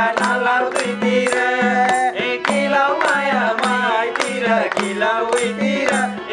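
Nepali live dohori folk song: singing over a harmonium, with a madal hand drum and a small tambourine keeping a steady beat of about two strokes a second.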